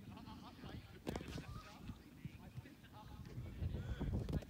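Distant voices of young players calling out on an open pitch, over low wind rumble on the microphone, with a sharp knock about a second in.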